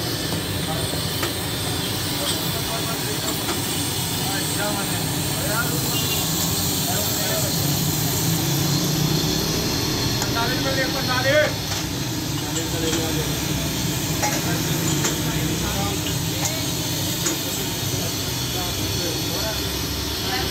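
Steady hiss of the tea stall's burners and steaming pans of milk tea, with voices chattering in the background and a brief louder sound about eleven seconds in.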